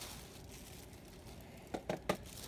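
Faint background hiss, then two brief crinkles near the end from a thin plastic shopping bag being handled.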